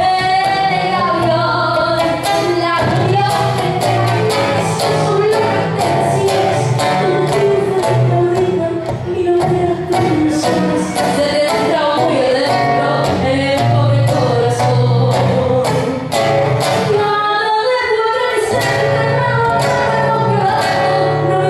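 A woman singing in a live performance, accompanied by a nylon-string acoustic guitar.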